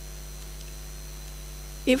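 Steady electrical mains hum on the microphone feed, with a faint high steady whine above it. A voice starts right at the end.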